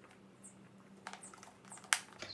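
Quiet sips through a straw from a plastic frappuccino cup, then a few light clicks and one sharp click near the end as the plastic cup is handled.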